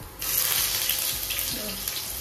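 Chopped onions dropped into hot oil in a nonstick frying pan, setting off a loud sizzle that starts suddenly just after the start and keeps going.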